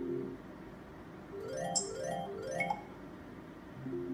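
Merkur Lucky Pharao slot machine's electronic sounds: its looping background melody breaks off shortly after the start, then three quick rising chime runs play about half a second apart, and the melody starts again near the end.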